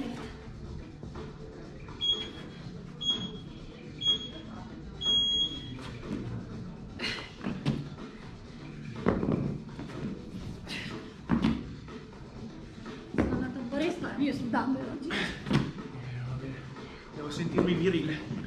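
An electronic interval timer beeps three short high beeps and one longer one, a second apart, marking the start of a work interval. Then dumbbells knock and thump on the rubber gym floor during dumbbell burpee deadlifts.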